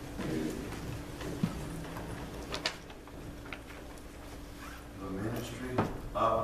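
Indistinct speech in low voices, with a few sharp knocks or clicks in between.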